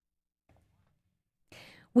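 Near silence, then a short breathy in-breath from a woman about to speak, in the last half second.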